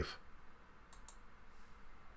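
Two faint computer mouse clicks in quick succession about a second in.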